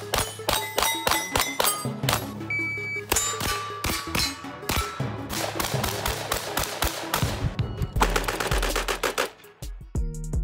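Gunshots in quick strings from long guns, a shotgun and a pistol, cut together one after another over background music, with a very fast run of shots about eight seconds in.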